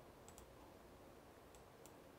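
Near silence with a few faint clicks, two close together near the start and one near the end.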